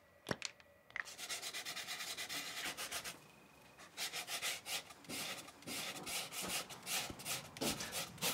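A wooden spindle being sanded by hand, in quick back-and-forth rubbing strokes. The strokes pause briefly about three seconds in, then resume less evenly. Two small clicks come just before the rubbing starts.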